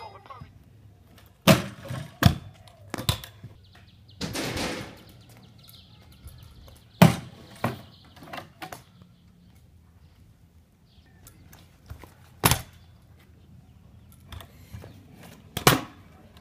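Stunt scooters doing tricks on asphalt: a series of sharp clacks as the deck and wheels land and strike a low box ledge, about seven in all, with the wheels rolling over the asphalt between them and a short scraping rush about four seconds in.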